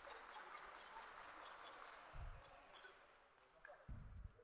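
Near silence: faint room tone of a gymnasium, with a soft thud about two seconds in.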